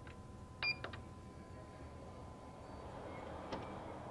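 Clicks of the HP Designjet T7100's front-panel keys being pressed, with a short high electronic confirmation beep from the printer about two-thirds of a second in, followed by a couple of lighter clicks and one more click near the end. A faint steady tone hums underneath.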